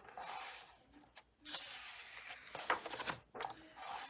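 Paper pages of a coloring book being turned and pressed flat by hand: two soft rustling swishes of paper with a couple of light taps.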